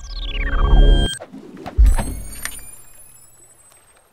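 Electronic logo-intro sound effects: a falling sweep over a low rumble that cuts off about a second in, then a deep boom just under two seconds in, followed by high ringing tones that fade away.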